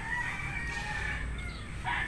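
Faint rooster crowing: one crow trailing off in the first half, and another starting near the end.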